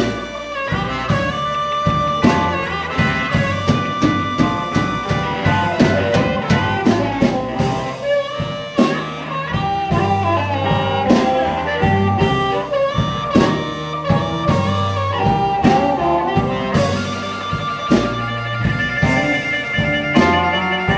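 Live electric blues band playing with a steady beat: electric guitar, upright bass and drum kit behind an amplified harmonica played cupped to a microphone.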